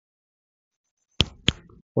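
Dead silence for over a second, then two short sharp clicks about a third of a second apart.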